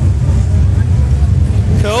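A steady low rumble of background noise, heavy in the bass, with a short spoken "cool" near the end.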